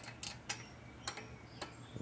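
A few sharp, light metallic clicks of pliers and a wrench on a Honda GCV engine's rocker-arm adjuster stud and jam nut, as the valve clearance is set.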